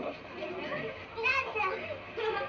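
Young children's voices and play noise from an old camcorder home video, heard played back through a TV speaker, loudest over a stretch near the middle, with a steady low hum underneath.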